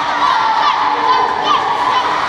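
A group of children shouting and cheering together, many high voices at once without a break.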